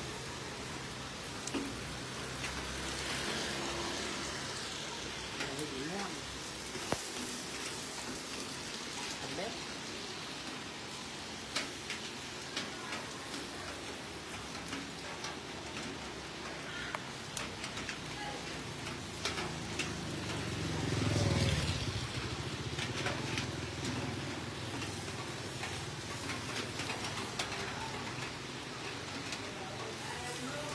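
Steady hiss and scattered crackles of fat and baste sizzling on a whole pig spit-roasting over charcoal as it is brushed. A low rumble swells briefly about two-thirds of the way through.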